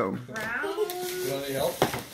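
A young child's voice, one drawn-out high-pitched vocalisation without clear words, gliding and then held for about a second and a half.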